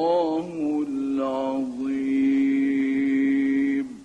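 A man chanting the closing words of a Quran recitation in the melismatic tajwid style. The voice winds through ornamented turns and then holds one long steady note that stops just before the end.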